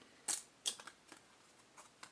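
Stiff glossy basketball trading cards sliding and snapping against each other as a card is moved off the top of a hand-held stack: two sharp swishes in the first second, then a few fainter rustles.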